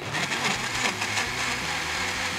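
Countertop blender with a glass jar running steadily at speed, blending a milky liquid.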